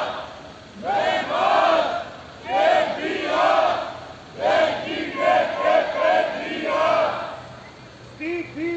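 A crowd of protesters chanting a slogan in unison. The chant comes in rhythmic phrases with short pauses between, then runs into a longer string of repeated beats near the middle.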